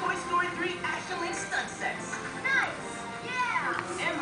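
Baby vocalizing with high squeals and coos that slide down in pitch, two of them clearest near the middle and near the end.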